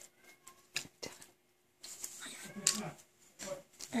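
Hands squishing and working in a tray of soapy milk, with a few small wet clicks, and a short pitched, gliding vocal sound about halfway through.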